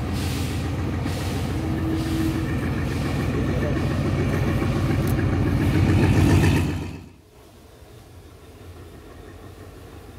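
Passenger train's diesel locomotive rumbling as it passes close by, growing steadily louder, then the sound drops away suddenly about seven seconds in to a quiet background.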